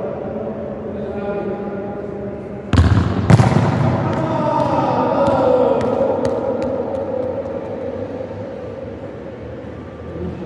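A futsal ball kicked hard about three seconds in, with a second bang a moment later and a reverberant tail in the enclosed court. A few lighter bounces on the hard court floor follow.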